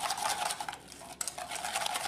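A whisk beating a thick mashed avocado and egg-yolk mixture in a stainless steel bowl: rapid scraping and clicking against the metal. It eases off for a moment near the middle, then picks up again.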